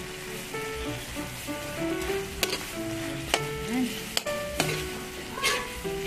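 Chicken feet sizzling in dark sauce in a metal wok, stirred with a metal ladle that clinks sharply against the pan several times. A simple background melody plays underneath.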